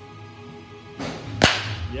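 Baseball bat striking a pitched ball: one sharp crack about one and a half seconds in, just after a brief rush of noise.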